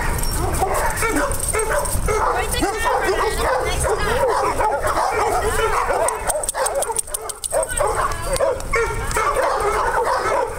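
Many dogs barking and yipping at once, a dense overlapping chorus that never lets up.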